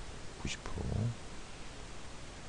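A man's voice briefly says "90%" in Korean, then a pause with only a low steady hum of room and microphone noise.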